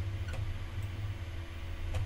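Steady low hum of room tone, with faint clicks of a computer mouse: one about a third of a second in and another near the end.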